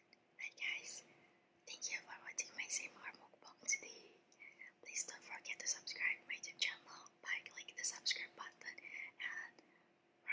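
A woman whispering in short phrases with brief pauses.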